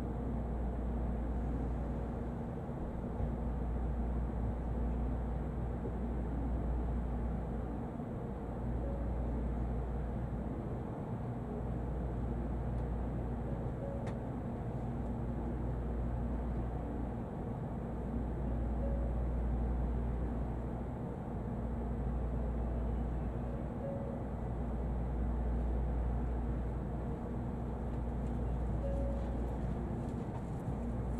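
Steady low hum and rumble inside a stationary N700 Shinkansen passenger car standing at a station platform.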